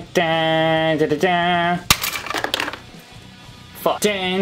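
A man singing a wordless tune in held notes, broken off about two seconds in by a sharp knock and a brief clatter of plastic action figures and toy props being knocked over.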